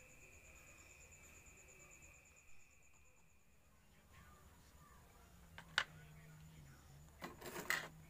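Quiet handling of small plastic enclosures: a faint steady high whine stops about three and a half seconds in, then a single sharp plastic click comes a little before six seconds. A low hum and a few murmured sounds follow near the end.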